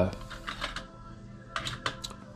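A few faint clicks and light rustles in two short clusters, about half a second in and again near the end.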